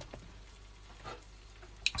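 Faint, steady sizzling of diced potatoes and onions frying in oil and butter in a hot four-cup frying pan, with a soft click near the end.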